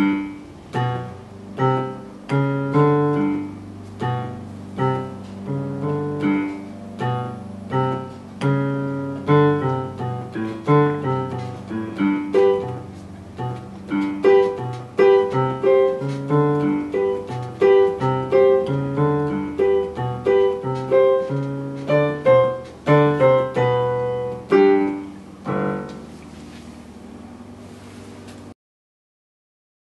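A simple beginner's piano piece played by a child on a digital piano, with repeated low bass notes under a melody in the right hand. The last note rings out and fades near the end.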